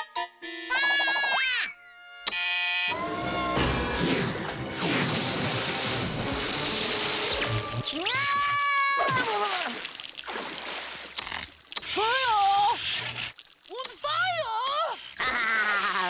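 Cartoon soundtrack of music and sound effects: a rushing noise for several seconds in the first half, then several sliding, wavering tones later on.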